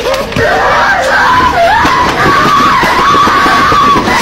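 A loud, long scream with a wavering pitch over harsh, distorted noise, from the audio of horror found-footage.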